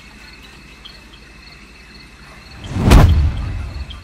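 Night ambience of crickets chirping steadily, about two chirps a second. Near the end a sudden loud rush of noise with a deep boom swells up and fades away over about a second.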